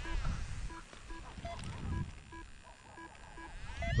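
Paragliding flight instrument (variometer) giving short, soft electronic beeps at a few fixed pitches, about two a second, over uneven low rumbling.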